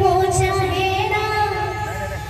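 Kirtan devotional music: a high voice singing a wavering melody over steady held instrumental notes and the regular strokes of a barrel drum.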